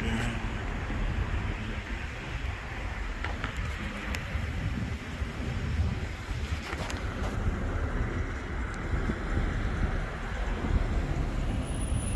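Steady outdoor road-traffic noise: a continuous hiss with a fluctuating low rumble, and a few faint clicks.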